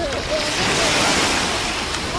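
Small waves washing up onto a sandy beach as the tide comes in. The surf noise swells to a peak about a second in.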